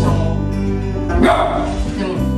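A small dog gives a single bark about a second in, over steady background music.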